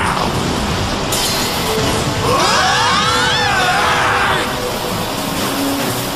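Animated battle soundtrack: dramatic music under a loud whooshing and clashing sound effect of spinning battle tops colliding. A cluster of whines rises and then falls in pitch in the middle.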